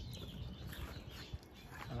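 Faint bird chirps over a quiet outdoor background, with one soft tick a little past halfway.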